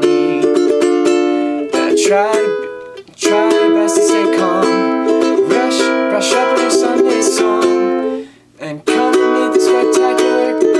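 Ukulele strummed in full chords, playing the chorus chord progression of a song. The strumming breaks off briefly about three seconds in and again near the end.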